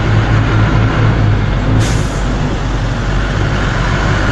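A truck engine running steadily, heard from inside the cab, with a deep, even drone. About two seconds in there is a brief, sharp hiss of air.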